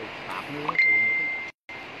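A steady, high electronic beep, one even tone held for under a second after a man's short word, then cut by a brief dropout in the audio and carrying on faintly.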